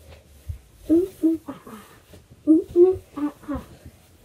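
A girl's voice in a series of short vocal sounds without clear words, loudest a little over halfway through, with a faint thud about half a second in.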